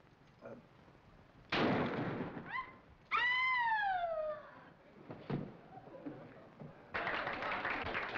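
A single gunshot, sudden and fading over about a second. A woman then gives a brief rising gasp and a long scream that falls in pitch. A thump follows a couple of seconds later, and applause breaks out near the end.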